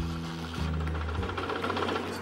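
A dirt bike engine running at idle, a rapid mechanical chatter, under background music whose low notes change about half a second and a second in.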